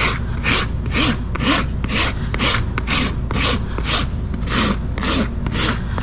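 Farrier's hoof rasp filing a horse's hoof during a trim: steady, even rasping strokes, about three a second.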